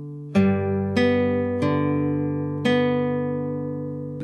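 Nylon-string classical guitar fingerpicked slowly: a G-chord arpeggio of four single plucked notes, about one every half to one second, starting with a low bass note. Each note rings on and fades into the next.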